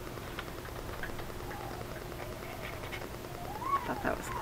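Wind howling around the house: a faint, wavering whistle that glides up and down in pitch, swelling to its highest near the end, with a few light paper ticks from handling.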